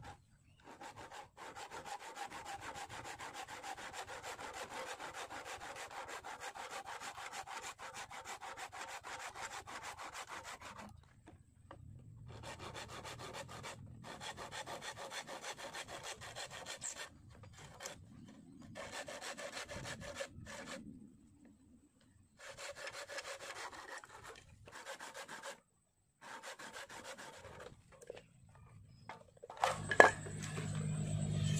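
Hand saw cutting through a green bamboo pole in steady back-and-forth strokes, unbroken for the first ten seconds or so, then in shorter bouts with brief pauses between them.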